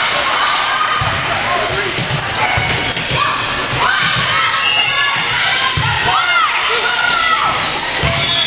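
Live sound of an indoor volleyball rally: players and spectators shouting and calling out over the thuds of the ball being played and footfalls on the court.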